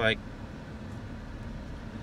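Steady low hum inside a car's cabin, with no change through the pause.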